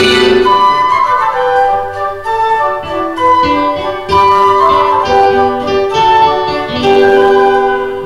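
Instrumental passage from an arranger keyboard: a lead melody of held notes over sustained chords, with no singing.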